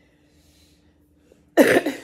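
A woman coughs once, short and loud, about a second and a half in: the lingering cough she still has after COVID.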